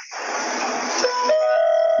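Recorded audio of a Disney Skyliner gondola cabin: about a second of crackly rushing noise, then an electronic chime of several steady held tones, the kind heard just before the cabin's announcement.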